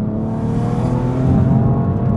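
BMW F80 M3 Competition's 3-litre twin-turbo straight-six pulling hard under acceleration, heard from inside the cabin; the engine note rises steadily in pitch and grows louder.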